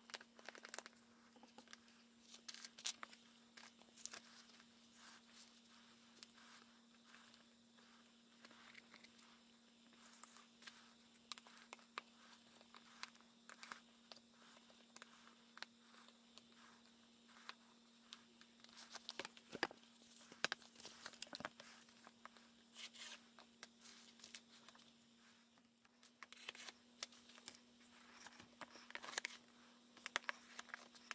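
Faint rustling and light clicks of a hardcover book's cover and pages being handled, over a steady low hum. The handling noises come thickest about two-thirds of the way through and again near the end.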